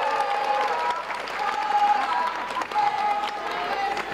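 Large audience applauding, with many voices singing together over the clapping.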